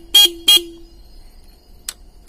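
Hero XPulse 200 FI motorcycle's horn tapped twice: two short beeps about a third of a second apart. A single click near the end.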